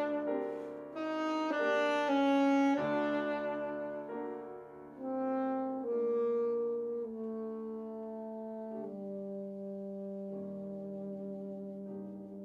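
Alto saxophone and grand piano playing a slow classical passage. The melody moves note by note at first, then settles into longer and longer held saxophone notes over piano chords, growing gradually softer.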